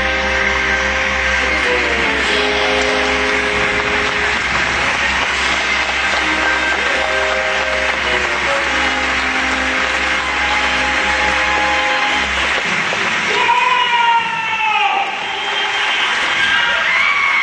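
Theatre pit orchestra playing held, slowly changing chords; near the end the music swells loudly, with a falling, sliding tone.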